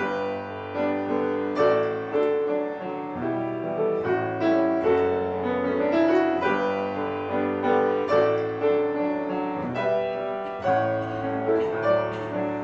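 Grand piano playing an instrumental interlude alone, chords and melody notes struck several times a second, each ringing on under the next.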